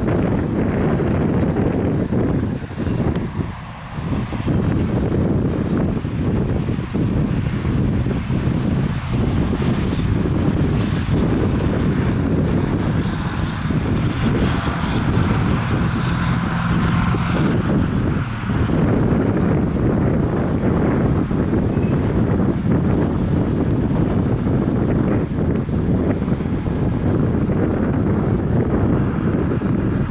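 Freight cars of a passing freight train rolling by: a steady, loud low rumble of wheels on the rails, with wind buffeting the microphone.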